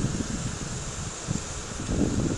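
Wind noise on an outdoor microphone: a steady rushing hiss with a low rumble underneath.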